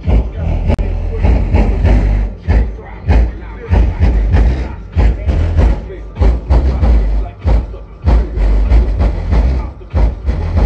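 Buick's car stereo playing bass-heavy rap music loudly, the subwoofer bass knocking in repeated beats, with rap vocals over it.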